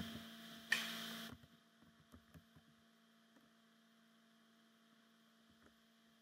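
A faint, steady electrical hum and a short burst of hiss in the first second or so, then near silence broken by a few faint keyboard clicks.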